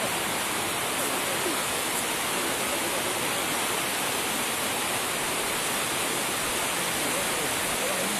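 A steady, even rushing noise like running water, with faint voices in the first second or so.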